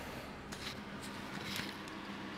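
BMW E30's engine idling, heard from inside the cabin as a faint steady hum, with a couple of light clicks.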